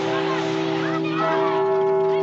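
Film soundtrack: a sustained, bell-like chord holds steady, over busy street noise with scattered voices and calls.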